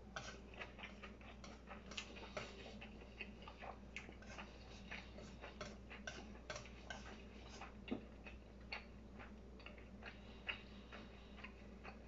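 A person eating with chopsticks: faint, irregular small clicks and smacks of chewing and chopsticks touching the dish, several a second with no steady rhythm.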